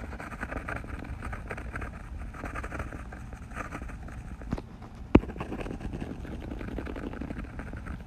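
Steady background hiss with faint light ticking, and one sharp click a little after five seconds in, with a smaller click just before it.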